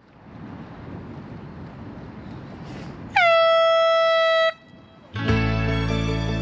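Air horn sounding one steady blast of about a second and a half, starting the fishing match, over a background of outdoor noise. Music comes in near the end.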